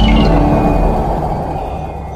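Logo-intro sound effect: the low rumbling tail of a big impact dying away steadily, with a thin high ringing tone held over it.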